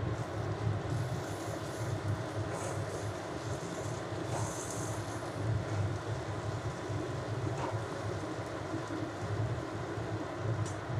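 A steady low hum runs throughout while a steel spoon stirs and scrapes onion-and-spice masala frying in oil in a metal kadai, with brief bursts of higher hissing in the first half.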